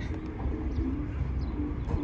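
Doves cooing: a series of short, low coos, over a steady low rumble of the street.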